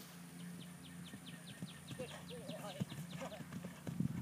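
Faint hoofbeats of a horse cantering on grass, with a quick run of high repeated chirps, about five a second, that stops about three seconds in, over a low steady hum.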